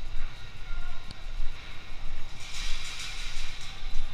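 City street noise: traffic with a steady low rumble, and a louder hissing rush that sets in a little past halfway.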